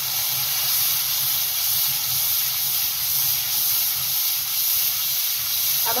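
Freshly added tomato paste sizzling in hot oil with fried onions and ginger-garlic paste in a frying pan: a steady hiss.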